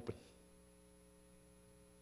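Near silence with a faint steady electrical hum, after a spoken word trails off at the very start.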